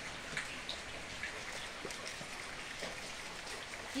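Light rain falling steadily, with scattered individual drips.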